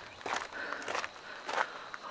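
Three footsteps, evenly spaced, on a rocky dirt walking trail.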